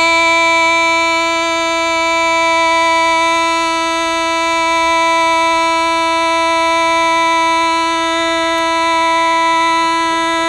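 A woman singing Hmong kwv txhiaj, holding one long, steady high note with nothing else playing.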